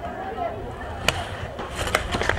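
A soccer ball kicked once: a single sharp thud about a second in, set among faint shouts from the players.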